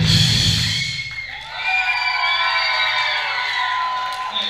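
A live rock band's playing stops about a second in, then a crowd of young people cheers, shouts and whoops.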